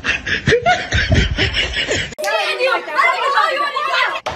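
A person laughing and snickering, then, after an abrupt change about two seconds in, voices talking.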